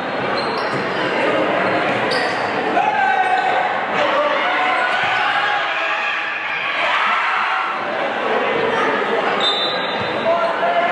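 Live game sound in a school gymnasium: a basketball bouncing on the hardwood court, with spectators' voices and shouts around it.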